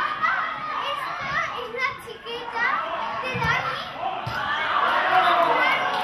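Young footballers' voices calling and shouting to one another during play, several high-pitched voices overlapping, busier in the second half.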